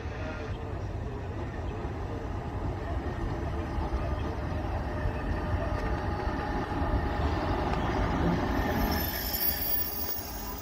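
Locomotives approaching and passing on rails, growing louder as they draw near. Near the end the wheels give thin high-pitched squeals.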